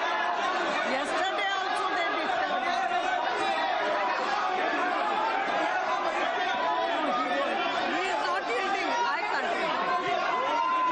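Many members of parliament talking and shouting over one another in a large chamber: a steady din of overlapping voices as a group protests in the house.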